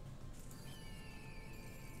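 Quiet online slot game music with game sound effects: a brief swish about half a second in, then a falling tone as a winning line is shown on the reels.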